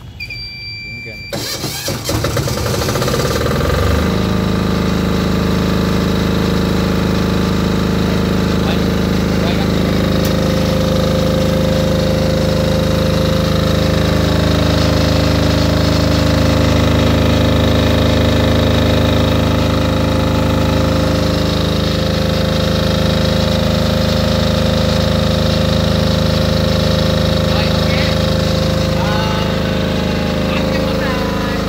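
A three-phase standby generator cranks and catches about a second in, then runs steadily at a constant speed. It has been started automatically by the ATS panel after the mains supply was cut. A short electronic beep comes just before the cranking.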